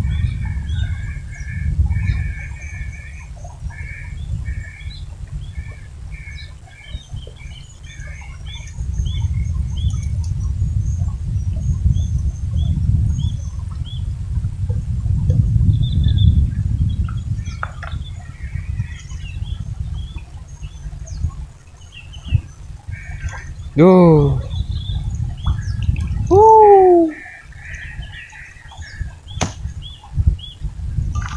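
Wind rumbling on the microphone, with small birds chirping repeatedly in the background. About two-thirds of the way in, a man lets out two short grunts a couple of seconds apart while hauling in a line.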